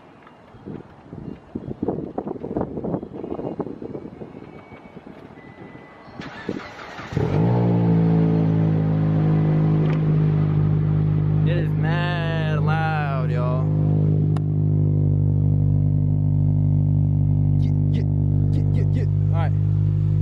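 Rustling and handling noise, then about seven seconds in the Mitsubishi Lancer GTS's engine comes in suddenly loud. Its pitch settles briefly, then it idles steadily.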